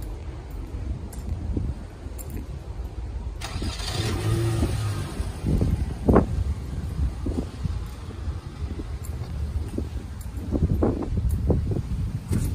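A car driving past on the street. Its rushing sound swells about three and a half seconds in and fades over the next two seconds, over a steady low rumble.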